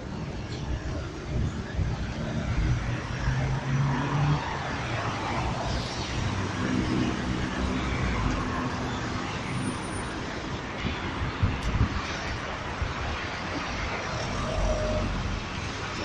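City street traffic: several car engines running, with a low engine hum that rises and fades as cars move off.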